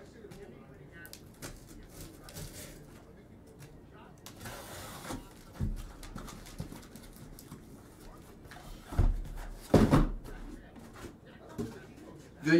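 Cardboard shipping case being opened and the boxes inside handled: a scraping rustle of cardboard about four seconds in, then a few knocks as boxes are set down on the table, the two loudest near the end.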